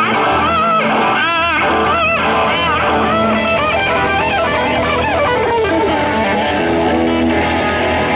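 Live rock band playing, with an electric guitar lead of wide vibrato bends over drums and strummed acoustic guitar.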